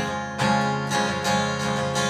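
Steel-string acoustic guitar strummed in a steady rhythm, capoed chords ringing.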